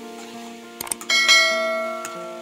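Soft background music with steady held notes. About a second in come a couple of quick mouse clicks, then a bright bell chime that rings and fades: the notification-bell sound effect of a subscribe-button animation.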